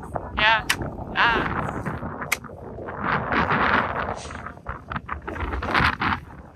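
Two short bursts of high-pitched laughter near the start, with a few sharp clicks in between and noisy, breathy stretches later on.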